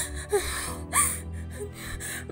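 A woman sobbing, with gasping breaths and short whimpers, over steady background music.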